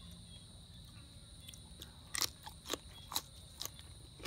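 A person chewing food close to the microphone, with about four short, sharp crunches in the second half. A steady high insect drone runs behind.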